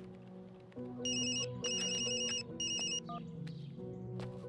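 Mobile phone ringing: an electronic ringtone of high warbling beeps in three bursts, starting about a second in, over a soft background music score.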